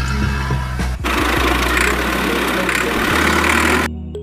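A dubbed tractor engine sound effect runs with a steady low note. About a second in, a loud rushing noise comes in over it, lasts nearly three seconds and cuts off just before the end.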